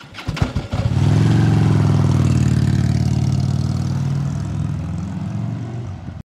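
Motorcycle engine, a Harley-Davidson touring bike's V-twin, starting with about a second of uneven firing, then running steadily and slowly fading.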